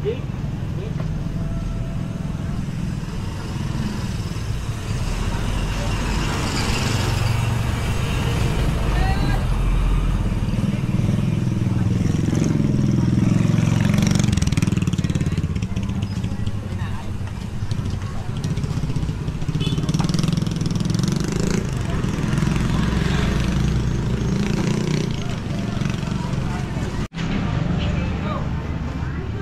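Street traffic of small motorcycle engines and motorcycle-sidecar tricycles running and passing, a low rumble that swells and fades, with people's voices around.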